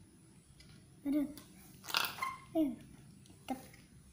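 A young girl's short exclamations and vocal noises, with a sharper noisy burst about two seconds in.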